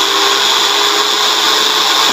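Motor unit of a Disnie 3-litre electric quick chopper running free, lifted off its bowl with no load: a steady high-pitched whine.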